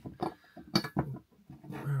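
A few short clicks and knocks from a white glass globe being turned over and handled.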